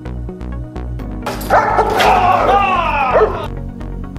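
Background music with a steady beat. From about a second in, a dog barks and yelps in a run of falling calls that stops shortly before the end.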